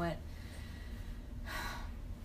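A woman's short, breathy gasp near the end, after a spoken word and a pause, acting out someone's resigned reaction.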